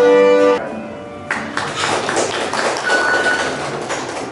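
Fiddle and guitar music ending on a loud held chord that cuts off about half a second in. After a brief lull, a busy stretch of tapping and rattling noise follows.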